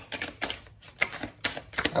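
A deck of tarot cards being shuffled by hand: an irregular run of quick crisp card clicks and flutters, several a second.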